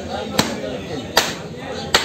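Butcher's cleaver chopping beef on a wooden stump block: three sharp strokes, evenly spaced about 0.8 s apart.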